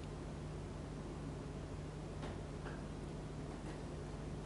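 Quiet room tone: a steady hiss and low hum, with a few faint ticks a little past halfway through.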